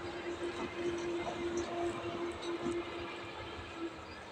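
ÖBB diesel locomotive passing with its train, the engine running and the wheels rolling on the rails. A steady tone is held throughout and stops just before the end.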